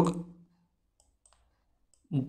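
A man's voice trails off on a held syllable in the first half second. Then it is nearly quiet, with a few faint clicks from the input device as handwriting is drawn on screen.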